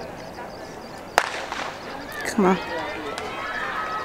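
Starter's pistol fired once about a second in, followed by a loud shout and spectators yelling and cheering as a sprint heat gets under way.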